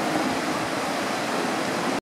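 Ocean surf washing onto a sandy beach, a steady rush of noise, with wind rumbling on the microphone.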